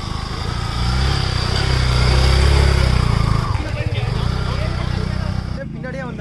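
A motorcycle engine running hard, growing louder over the first two and a half seconds and then easing away, with people shouting over it.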